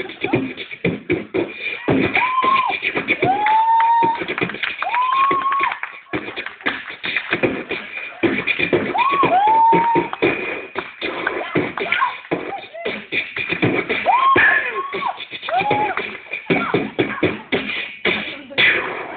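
A person beatboxing: a fast, continuous string of vocal clicks and pops, broken several times by short sliding, whooping vocal notes that rise and then level off.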